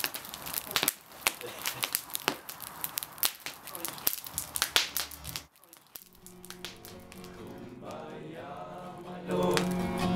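A wood campfire crackling and popping, with many sharp snaps, for about the first five seconds. It then drops away and a steady held chord with voices comes in, growing louder near the end.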